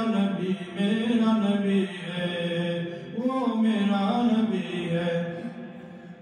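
A man's unaccompanied voice chanting an Urdu naat in long, drawn-out melodic notes that bend up and down, fading away near the end.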